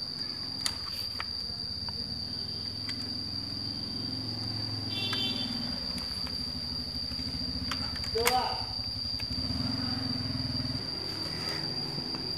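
The indoor fan motor of a Funiki air conditioner runs on the test bench with a low, steady hum. The hum stops about eleven seconds in. A short beep sounds about five seconds in.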